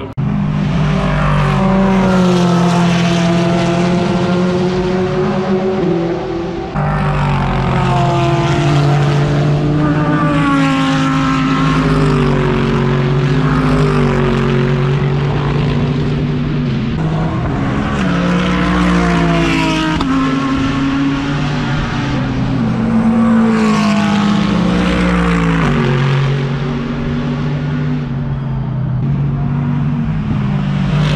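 GT3 race cars' engines at full throttle, passing one after another: a loud engine note climbing in pitch and stepping at each gear change, with a sudden change about seven seconds in.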